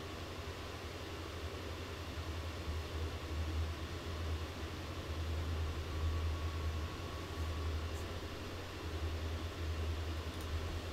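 Steady low hum and faint hiss of room and microphone background noise, with a faint click about eight seconds in.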